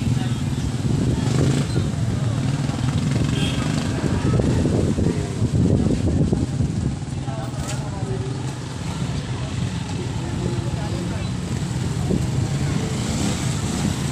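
Road traffic at a junction: a jeep's engine as it pulls away, then a small car and motorcycles going by, over a steady low rumble.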